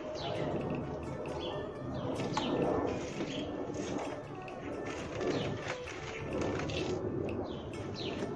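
Birds chirping, with a dove cooing.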